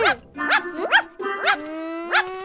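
Cartoon puppy barking playfully: four short yips about half a second apart, each rising and falling in pitch, over a held musical tone.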